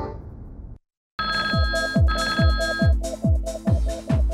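Television ident music fades out to a brief silence, then a TV show's electronic theme music starts with a deep kick drum about two and a half beats a second. Near its opening, a telephone rings twice.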